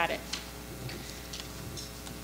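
A few faint, scattered clicks over low room tone in a meeting room.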